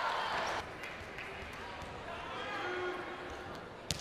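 Quiet indoor gym ambience between volleyball rallies: faint voices of players and spectators in the hall, with a few light knocks.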